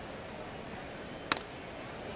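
A wooden baseball bat cracks once, sharply, as it meets a pitch and drives it on a line, about a second and a third in. Under it runs the steady hum of a ballpark crowd.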